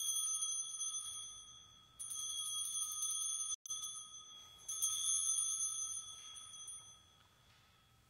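A small altar (sanctus) bell rung three times, about two and a half seconds apart, each high, clear ring dying away. In the Eucharist the bell marks the elevation of the cup just after the words of institution.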